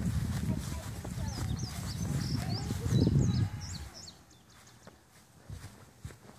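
Low rumbling handling noise and footsteps from a phone carried at a brisk walk across a lawn, with small birds chirping high above it; the rumble drops away about four seconds in.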